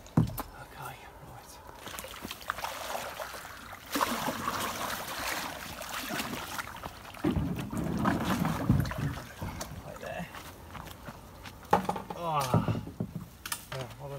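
Water sloshing and the plastic hull of a sit-on-top kayak knocking and scraping against the rocky bank as it is handled at the water's edge, with scattered clicks and a stretch of rougher noise in the middle.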